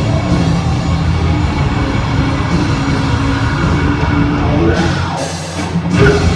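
Live heavy metal band playing loud: distorted electric guitars, bass and drum kit together. Shortly before the end the low end drops out for about a second, then the full band comes back in.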